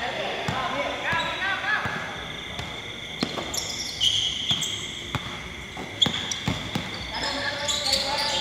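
Basketball bouncing on a hard court in a run of repeated thumps as it is dribbled, with a few short high squeaks about four seconds in.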